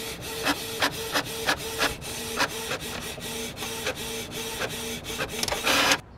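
Epson inkjet printer printing a photo: a steady motor whir with regular clicks about three times a second as the print head moves back and forth and the paper advances, and a louder rush near the end as the sheet feeds out.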